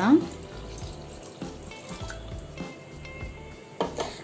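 Water poured from a bowl into a steel pot of grapes, a steady gentle splashing.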